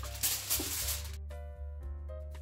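Aluminium foil crinkling and rustling as a sheet is handled and pressed around food, dying away after about a second. Background music plays under it.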